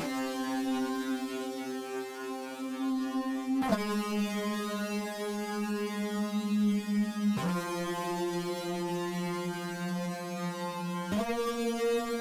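Alchemy software synth lead patch playing four long held notes on its own, changing pitch about every three and a half to four seconds. The notes are the bass line's root notes, sitting low in the C2 range.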